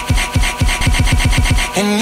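A hip-hop track caught in a very short DJ loop: its falling 808 bass drum and hi-hat stutter about eight times a second as a loop roll. The normal beat and melody come back near the end.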